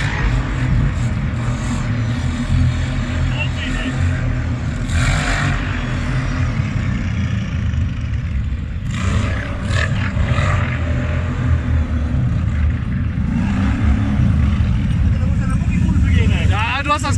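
Quad (ATV) engines running, a steady low rumble inside a concrete cooling tower.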